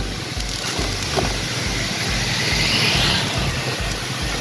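A motor scooter running at road speed, heard from the rider's seat: a steady rush of engine, wind and road noise with a low throb repeating a few times a second.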